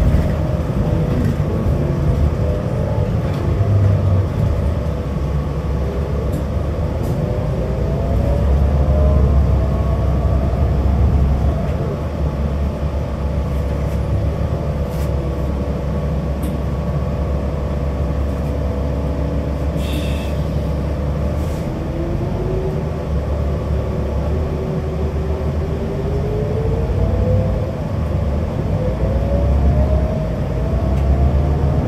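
Inside a moving New Flyer Xcelsior XD60 articulated diesel bus: a steady low engine and road rumble, with a drivetrain whine that slowly rises and falls in pitch as the bus speeds up and slows in traffic. A brief high tone sounds about twenty seconds in.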